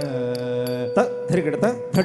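A Carnatic vocalist holds one long sung note for Bharatanatyam dance accompaniment. About a second in, rhythmic recitation of dance syllables (tha, dhim) begins, punctuated by sharp percussive strikes, some of them ringing like small hand cymbals.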